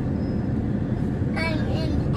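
Steady road and engine noise heard inside the cabin of a moving car, with a brief voice near the end.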